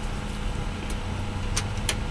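Steady low background rumble with a faint hum, and two small clicks near the end from handling a plastic spray bottle.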